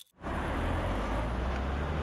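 Steady road traffic: a low engine drone under an even hiss of tyres and road, beginning a moment in after a brief silence.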